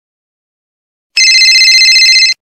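Silence, then about a second in a loud, high, trilling telephone ring, one ring lasting just over a second, as a call to 911 goes through.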